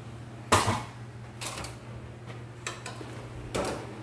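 A sharp knock about half a second in, then a few fainter knocks and clatters about a second apart, over a low steady hum.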